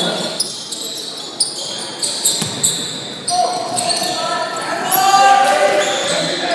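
Basketball game sounds in a large gym: a basketball bouncing on the hardwood court and players' shoes on the floor, with spectators' voices in the hall.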